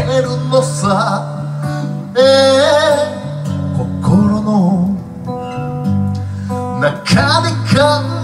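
A man singing live to his own acoustic guitar, a Creek Time Machine Series CJFG 1957, in sung phrases with short breaks between them.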